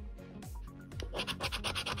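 A coin scratching the coating off a paper scratch-off lottery ticket. The scraping is faint at first and turns into a run of quick, rapid strokes about a second in.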